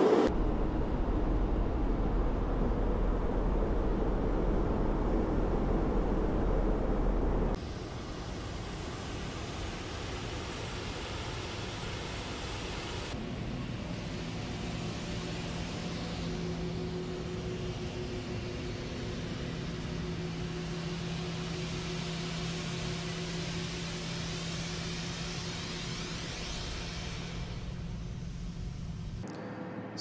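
Steady aircraft noise with no speech, changing at edits. A louder rumbling cabin noise of the Voyager tanker runs for about the first seven and a half seconds. A quieter steady noise with a low, even hum follows.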